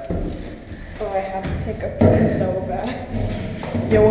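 Indistinct voices talking inside a steel shipping container, with a sharp thump about two seconds in and another near the end.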